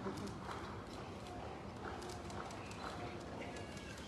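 A string of light, irregular knocks and clicks, several a second, over faint room noise.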